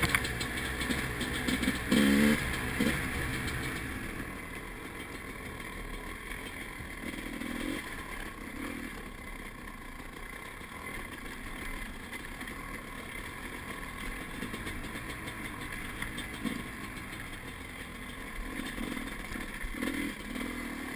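Dirt bike engine running as it is ridden along a trail, the revs rising and falling. It is louder and choppier in the first few seconds, then settles to a steadier, lower level with occasional swells.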